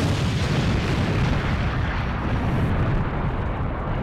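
Explosion sound effect for a huge blast: a sudden boom followed by a long, steady rumble whose hiss thins out over the last second or so.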